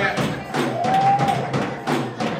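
Live gospel band music: drum kit and percussion striking a steady beat, with one held note near the middle.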